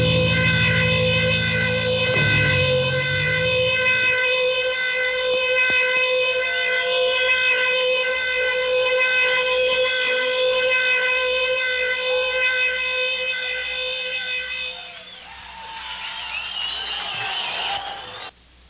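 Electric guitar holding one long sustained feedback note, rich in overtones, with low bass notes under it for the first few seconds. The note stops about 15 seconds in, and high wavering squeals follow until everything cuts off suddenly at the end.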